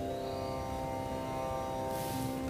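Soft instrumental background music of long, steady held notes, with the notes changing near the end.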